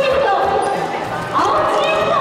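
People's voices and chatter in a busy, echoing sports hall.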